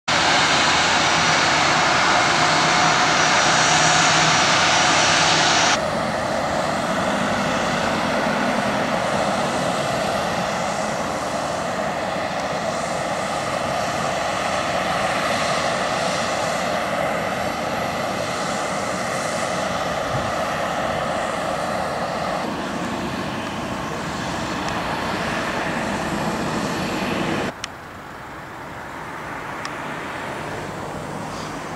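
Gulfstream G550 business jet's rear-mounted turbofan engines running as it taxis: a loud, steady jet noise with a thin high whine. The sound shifts abruptly about 6 s in and again later, then drops much quieter near the end.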